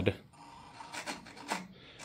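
Low room noise with two brief, faint scraping or rubbing sounds, about one second and one and a half seconds in.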